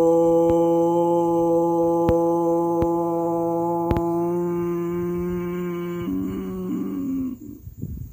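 A man chanting one long, steadily held note, like a mantra. Near the end the sound changes briefly and fades out about seven seconds in.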